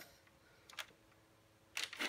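Near silence with two faint plastic clicks from a Nerf Zombie Strike Dreadbolt crossbow blaster being handled, one a little under a second in and one near the end.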